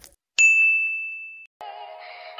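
Subscribe-button animation sound effect: a single bright ding about half a second in, fading out over about a second. Music then starts faintly near the end.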